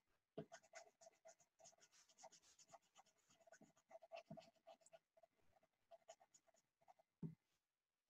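Colored pencil scribbling on a paper worksheet in fast, short back-and-forth strokes, faint. A single light knock near the end.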